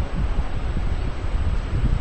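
Low, uneven rumbling noise like wind buffeting the microphone, as loud as the surrounding speech.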